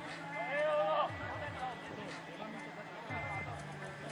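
Faint voices of people talking in the background, clearest in the first second, over a steady low hum and a faint thin high tone.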